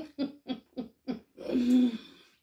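A woman laughing: a quick run of about six short voiced pulses, then a longer held vocal sound near the end.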